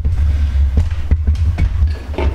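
Background music with a steady low bass and light percussive ticks.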